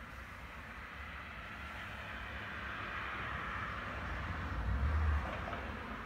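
A road vehicle passing by: its noise swells gradually over about five seconds, with a low rumble at the peak, then starts to fade.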